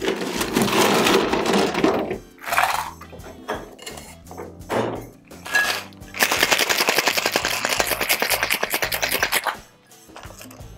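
Ice is scooped and dropped into a steel cocktail shaker tin. About six seconds in, a tin-on-tin Boston shaker is shaken hard, and the ice rattles rapidly and evenly against the metal for about three seconds before stopping.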